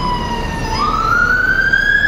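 Emergency vehicle siren wailing: the tone slides slowly down, then about two-thirds of a second in jumps back and climbs slowly again, over the low rumble of street traffic.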